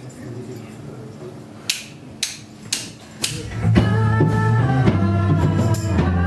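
Four sharp percussive clicks about half a second apart, a count-in, then a live band comes in just past halfway with sustained violin and keyboard notes over low notes.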